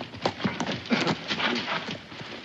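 A horse's hooves clopping on the ground in an irregular run of knocks.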